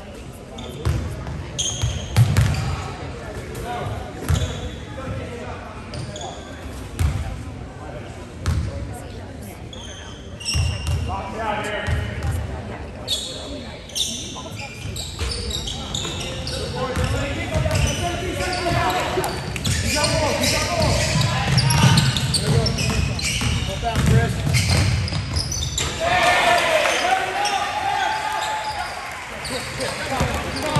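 Basketball bouncing on a hardwood gym floor, a few separate thumps in the first ten seconds. Then busier play as players and spectators shout and talk, getting louder from about halfway.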